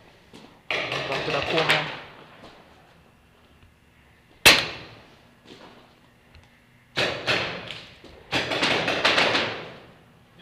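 Paintball markers firing in rapid volleys, about a second or more each, three times, with a single sharp shot about halfway through that rings on in the hall.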